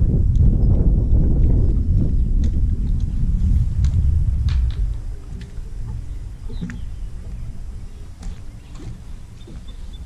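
Low, gusting wind rumble on the camera microphone, strongest in the first five seconds and easing off after, with a few faint clicks.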